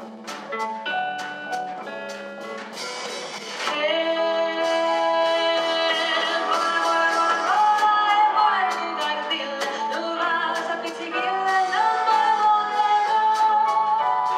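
Live jazz band — piano, double bass, drum kit and guitar — playing an arrangement of an Abruzzese folk song, the cymbals ticking steadily. About four seconds in, a woman's voice enters over the band, singing long held notes, and the music grows louder.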